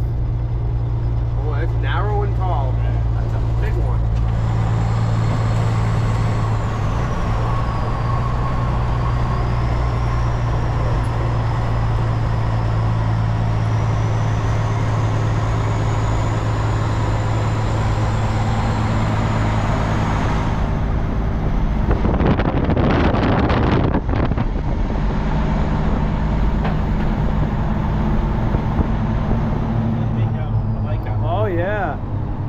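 A Peterbilt semi truck's diesel engine cruising at a steady low drone with road noise, heard from inside the cab, with a faint wavering high whine for much of the time. About two-thirds through comes a loud rattling rumble that lasts about two seconds.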